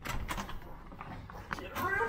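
A hotel room door's lever handle and latch clicking as the door is pushed open. Near the end comes a short, high-pitched sound that rises in pitch.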